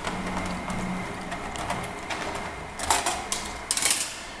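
Screwdriver turning out the screws of a plastic laptop bottom access panel, with small clicks and scrapes, then a few sharper plastic clicks near the end as the panel is lifted off.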